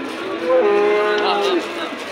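Cow mooing once: one long call of about a second that drops in pitch at the end.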